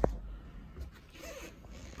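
Faint soft rustling and brushing, with a short squeak about halfway through.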